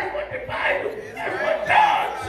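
A man's raised, shouted voice through a microphone, with congregation voices calling back.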